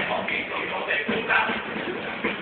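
Theatre sound heard from the upper gallery during a lull in a carnival choir's singing: shuffling and indistinct voices with scraps of music, and no steady singing.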